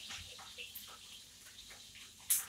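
Onions frying in oil in a hot pot, a faint steady sizzle with scattered light crackles.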